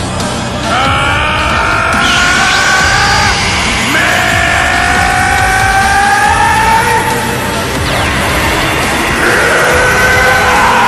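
Dramatic anime battle soundtrack: loud, tense music under long drawn-out yells, each held for about three seconds and slowly rising in pitch, as a male fighter charges an energy attack, over a steady low rumble.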